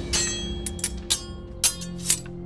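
Sword blades clashing about five times, each strike sharp with a brief metallic ring, the loudest near the start and about a second and a half in, over a steady held musical drone.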